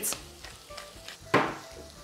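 Chicken liver, onions and carrots sizzling in a frying pan, with one sharp crackling burst about a second and a half in.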